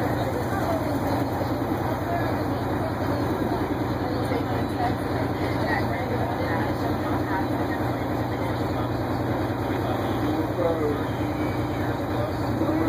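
Crown Supercoach Series II bus's diesel engine idling with a steady low hum, heard from inside the bus, with faint passenger voices over it.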